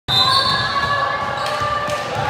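Basketball being dribbled on a hardwood gym floor, with sneakers squeaking in long, steady squeals as players run.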